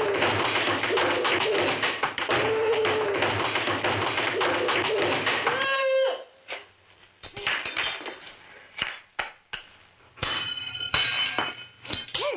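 A girl's wailing, grunting cries over scuffling and the clatter of tableware, cutting off about six seconds in. After that come scattered taps and clinks of a spoon on a china plate.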